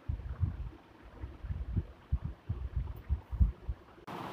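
A string of soft, irregular low thumps and rumbles, about a dozen over a few seconds, with no clear rhythm.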